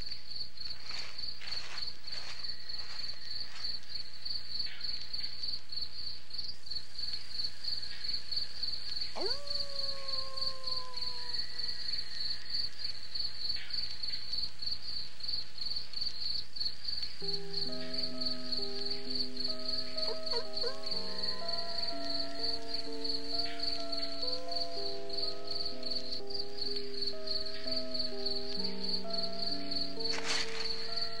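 Crickets chirping steadily in rapid pulses, a night-time background. A little past halfway, slow music of long held notes, stepping from one pitch to the next, comes in beneath the crickets.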